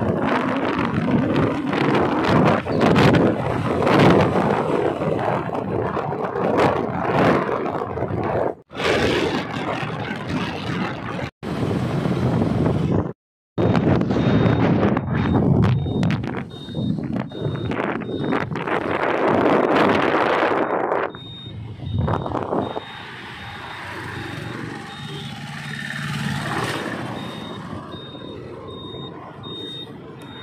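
Road traffic noise: the rushing of passing vehicles, loud and uneven, dropping out briefly three times. After about 21 seconds it is quieter, with a faint, repeating high beep.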